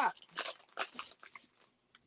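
Foil wrapper of a trading card pack being torn open and crinkled by hand: a few short crackling bursts over the first second and a half.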